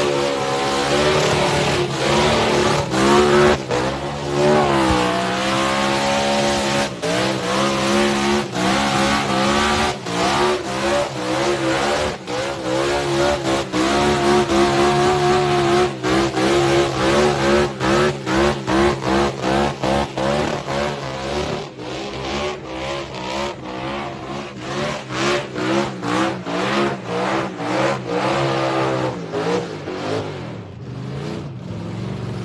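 Supercharged 302 V8 of a classic Ford Mustang revving hard through a burnout over the hiss and squeal of spinning tyres, the engine note rising and falling. In the second half the sound keeps cutting out briefly, about twice a second.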